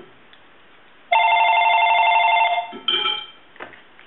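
Cordless home telephone ringing: one steady electronic ring about a second and a half long, followed by a brief shorter tone.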